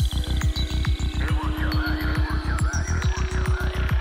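Psychedelic electronic dance music from a DJ set: a fast, driving kick drum and rolling bassline pulsing several times a second, with wavering synth lines over it from about a second in.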